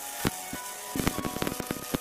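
Electric arc welding on steel plate: a steady crackling hiss of the arc with sharp pops, heard under background music.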